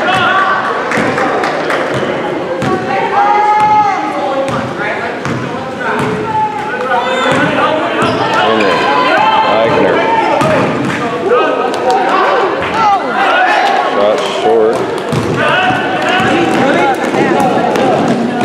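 A basketball dribbled on a gym floor, with repeated bounces and thuds, under a constant mix of indistinct voices from players and spectators echoing in the gym.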